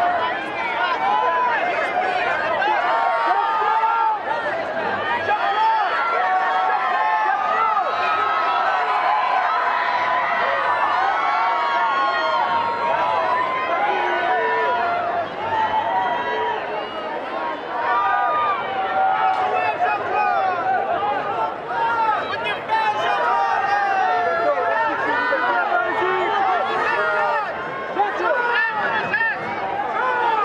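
A dense crowd of fans shouting and calling out over one another, many voices at once with no single voice standing out.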